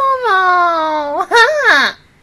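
A high-pitched, drawn-out vocal cry that slides steadily down in pitch, followed near the end by two short rising-and-falling wails, then cuts off abruptly.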